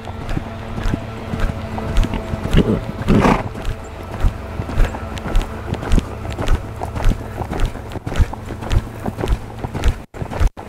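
Hoofbeats of a horse loping on an arena's sand footing: a running series of dull thuds over a steady low hum.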